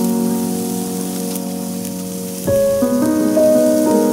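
Meat and vegetables sizzling on the grate of a Weber Baby Q gas grill, a steady hiss, under soft background piano music that changes chord about halfway through.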